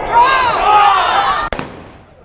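Several voices shouting over one another, then a single sharp gunshot about one and a half seconds in.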